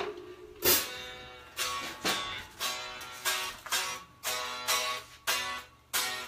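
Electric guitar strummed again and again, about two strokes a second, each chord ringing briefly and fading: checking the tuning between songs.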